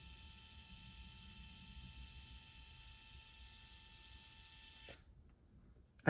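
Canon IVY Mini 2 ZINK photo printer running with a faint, steady whine as it feeds the print out. It cuts off with a soft click about five seconds in as the print finishes.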